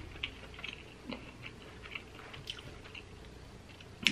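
A person chewing a mouthful of food with the mouth closed: soft, irregular wet clicks and smacks.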